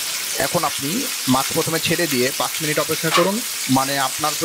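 Hot oil sizzling steadily as two whole sarpunti (olive barb) fish shallow-fry in a pan.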